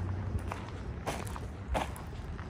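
Footsteps walking on dry dirt ground, about three steps in two seconds.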